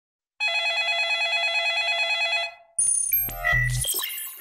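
A warbling electronic ringing tone, like a telephone ringtone, for about two seconds. After a short gap comes a jumble of electronic sound effects: high tones, clicks and a low bass.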